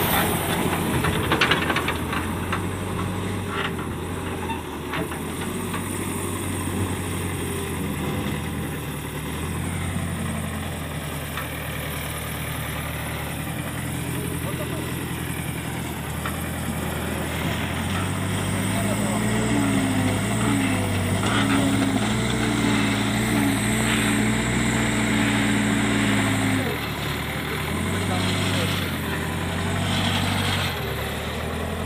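Diesel engine of a JCB backhoe loader running steadily. About two-thirds of the way through it works harder and grows louder for several seconds, then drops back.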